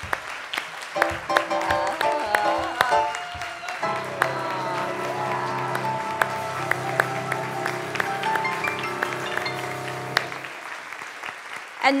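Congregation applauding, with instrumental music playing underneath that settles into long held chords from about four seconds in.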